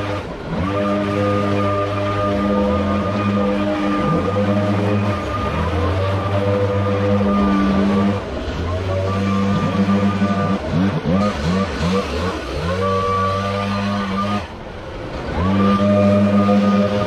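Backpack leaf blower's two-stroke engine running at full throttle. Several times it drops off briefly and revs back up: near the start, about four seconds in, at around eight seconds and shortly before the end.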